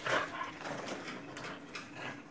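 Small dog playing rough with a plush slipper, giving one short yip just after the start, followed by light scuffling and clicks.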